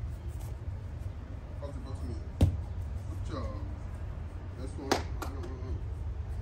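Two sharp kicks of a soccer ball by a bare foot, about two and a half seconds apart, over a steady low rumble.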